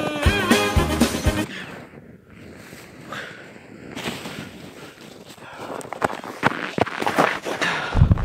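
A short burst of music with horn-like notes, then crunching and rustling in snow with scattered knocks as a person dives onto a snow pile and scrambles through it.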